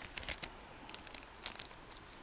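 Faint crinkling and a few small clicks from a clear plastic zip bag of banknotes and coins being handled and held up.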